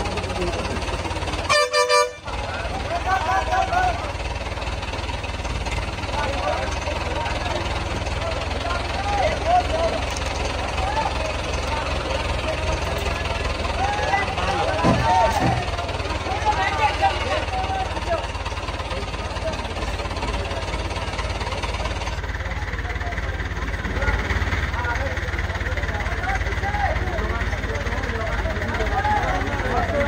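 Crowd of people talking and calling out over a steady low hum, with a brief dropout in the sound about two seconds in.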